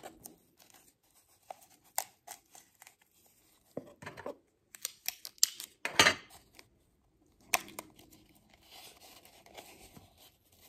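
Hands taping construction paper around a cardboard toilet paper tube: scattered crinkles, clicks and the rip of sticky tape, with the loudest rustle about six seconds in.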